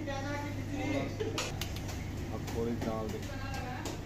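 Commercial kitchen ambience: a steady low hum under faint background voices, with a few light clinks of utensils.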